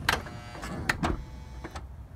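Power sliding door mechanism of a 2006 Honda Odyssey operating: a sharp click, an electric motor whining for just under a second, then another click, with a few fainter clicks after.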